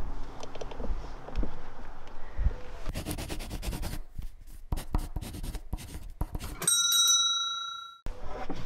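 Rustling and a few thumps as someone climbs into a van, then a quick run of sharp scratchy clicks, a pen-writing sound effect, and about 6.7 s in a single bright bell ding, several ringing tones fading out over about a second.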